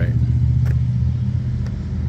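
Electric fillet knife running with a steady low motor buzz as its blades cut through a white bass fillet.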